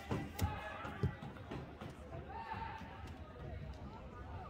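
Indistinct chatter of spectators' voices in a gym, with two sharp thumps about half a second and a second in.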